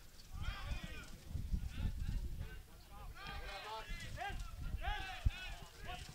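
Footballers shouting short calls to each other across the pitch, each call rising and falling in pitch, over a low rumble of wind on the microphone.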